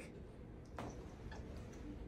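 Near silence: faint room tone with one soft click a little under a second in and a few fainter ticks after it.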